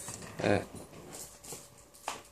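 A man's hesitant "uh" about half a second in, then quiet room tone.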